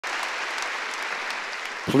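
Audience applauding steadily, dying away near the end as a man starts speaking.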